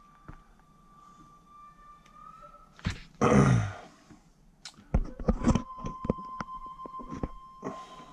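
A man clears his throat once, the loudest sound, a little past halfway through the first half. After that comes a run of sharp taps and rustles from the paper pages of a magazine being handled and turned. A faint steady high tone sits underneath.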